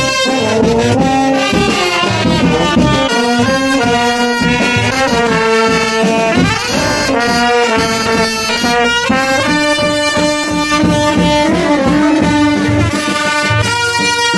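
Vietnamese funeral brass band (kèn tây) playing a melody on trumpets and other brass instruments, with sustained notes that change steadily through the phrase.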